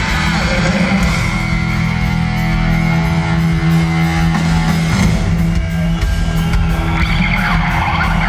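Live rock band playing loudly: held distorted electric guitar chords over bass and drums, changing about five seconds in, recorded from within the crowd.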